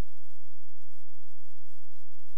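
Steady low electrical hum with faint hiss from a DVD player/VCR's idle audio output, with several soft low thumps at uneven intervals.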